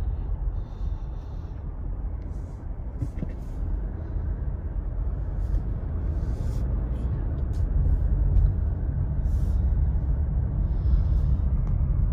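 Steady low rumble of a car's engine and tyres on the road, heard from inside the cabin while driving, growing a little louder near the end.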